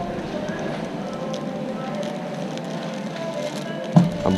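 Shop background music with indistinct voices, and light rustling as a clear plastic bag is handled.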